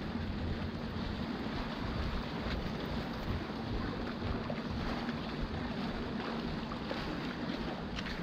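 Wind rumbling on the microphone with a steady background wash, under a faint, steady low hum.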